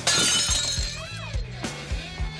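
A glass bottle smashing: a sudden loud crash of breaking glass at the start that fades over about half a second, over rock band music with a steady drumbeat.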